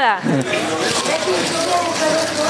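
Paper raffle coupons rustling as hands stir them around in a wooden box, a steady hiss-like rustle over faint background voices.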